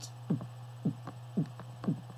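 Beatboxed techno bass kick made in the throat with the mouth kept closed, an 'ng' stopped before it leaves the mouth: four short hits, about two a second, each dropping in pitch. A steady low hum runs underneath.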